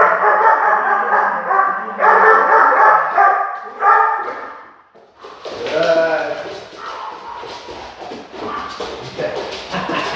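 Young Belgian Malinois barking and whining while heeling and jumping at the handler, loudest in the first few seconds, then quick taps of paws and feet on a laminate floor through the second half.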